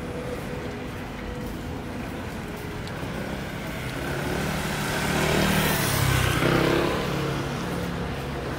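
A motor scooter riding past on a wet road: its engine note and tyre hiss build from about four seconds in, are loudest around six seconds, then fade.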